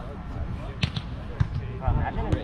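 A volleyball being hit by players' hands and arms in a grass-court game: two or three sharp hits, about half a second apart, in the second half, over background voices.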